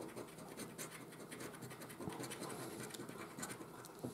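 A coin scraping the silver coating off a lottery scratch card in rapid, faint strokes.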